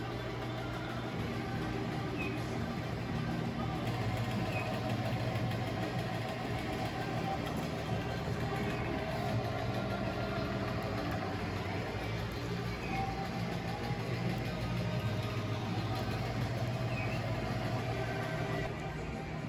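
Steady low hum with faint background music playing underneath.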